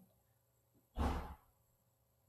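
A man's single audible breath, short and noisy, about a second in, between pauses in his speech.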